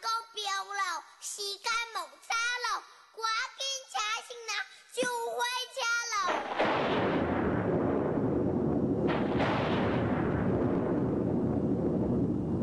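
Children's voices speaking lines in a lively sing-song for about six seconds. Then a loud thunderstorm sound effect sets in: a long, steady, deep rumble.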